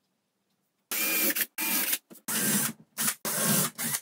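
Cordless drill boring shelf-pin holes into a melamine-faced chipboard panel. The motor runs in several short bursts with brief pauses between them, starting about a second in.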